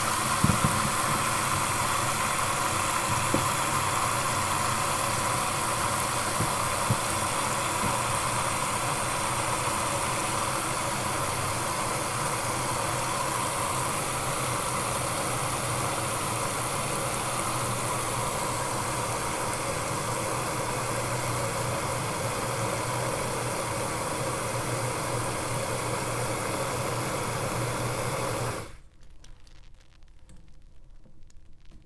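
A kitchen faucet's spray is running into a stainless steel sink that is filling with soapy water, making a steady rushing hiss. It stops abruptly near the end as the tap is shut off.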